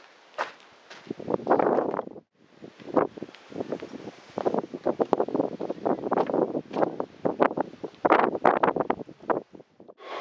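Irregular rustling and crackling with wind buffeting the microphone, breaking off briefly about two seconds in.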